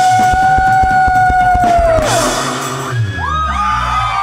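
Live rock band at the close of a song: the singer holds one long high note over rapid drum hits. About two seconds in, the note drops away and the drumming stops, leaving a cymbal wash and a tangle of sliding, wavering tones.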